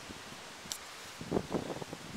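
Wind and rustling outdoors, heard as a steady hiss. A brief, louder burst of rustling comes about one and a half seconds in, after a single faint high click.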